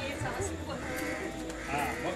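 A voice chanting in a wavering, melodic line, typical of ritual mantra recitation.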